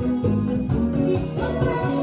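Bachata music with a plucked guitar and a singing voice over a strong bass line.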